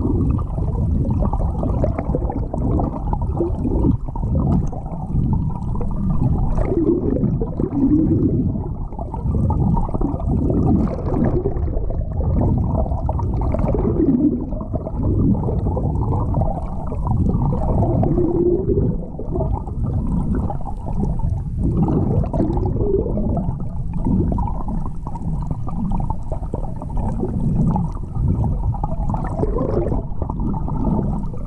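Muffled underwater noise picked up by a submerged camera while snorkeling: continuous water movement with irregular swells, and nothing above a low, dull range.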